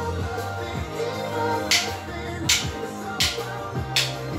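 Upbeat contemporary Christian pop music playing, with sharp clicks of wooden drumsticks struck together overhead about four times in the second half, roughly one every three-quarters of a second.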